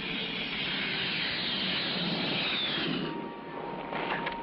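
Jet noise from a Grumman F11F Tiger fighter lifting off a runway: a loud, steady rush with a faint falling whine partway through, easing a little near the end.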